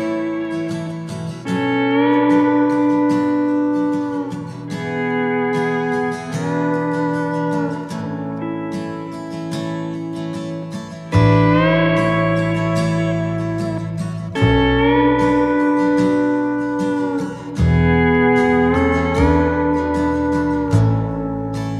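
Instrumental intro of a country song: a steel guitar plays long held notes that slide into one another over guitar. About halfway through, a bass comes in underneath.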